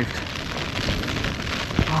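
Wind-driven rain battering a Soulo BL tent's flysheet from inside the tent, a steady rushing hiss, with one sharp thump about a second and three quarters in.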